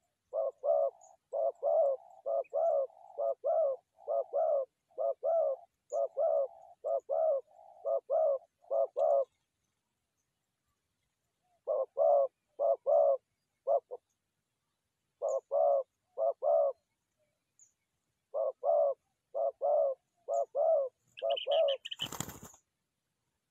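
Spotted dove cooing: runs of low, paired coos repeated over and over, broken by a few short pauses.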